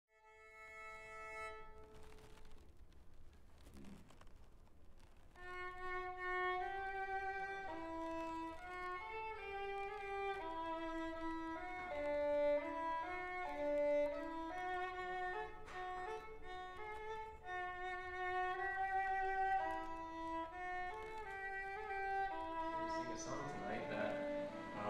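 Violin playing a slow melody one note at a time, with sustained bowed notes. It starts sparse and quiet and becomes a continuous line about five seconds in.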